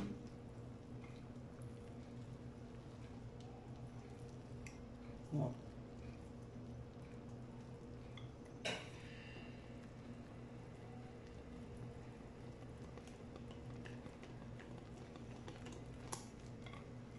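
Wire whisk stirring thick cassava cake batter in a glass bowl, faint and soft over a steady low hum, with a single sharp click about nine seconds in.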